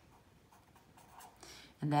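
Felt-tip marker writing on notebook paper: faint, short scratching strokes as a word is written.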